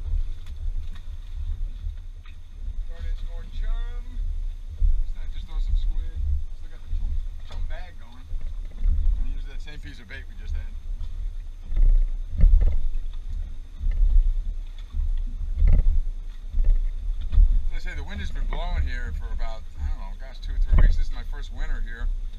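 Wind buffeting the microphone on an open boat, a gusting low rumble with a few knocks about halfway through and near the end. Snatches of indistinct talk come through a few seconds in and again near the end.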